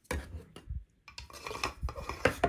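Hard 3D-printed plastic parts being handled: a string of light knocks, clicks and scraping as the resin-printed lightsaber hilt is picked up and the hollow printed plastic blade is slid into it.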